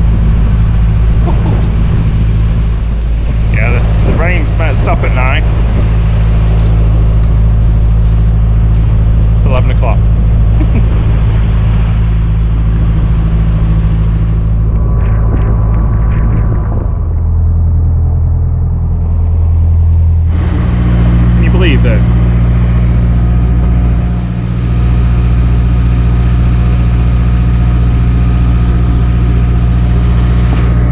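Narrowboat's diesel engine running steadily as the boat cruises along the canal. Its note changes for a few seconds a little past halfway, then settles back.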